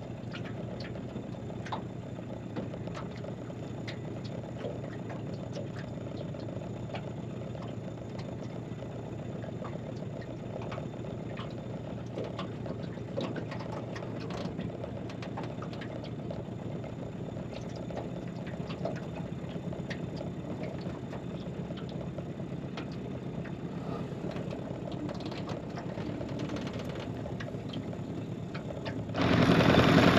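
Small outboard motor running steadily at low trolling revs, with scattered light ticks over the hum. About a second before the end the sound jumps much louder.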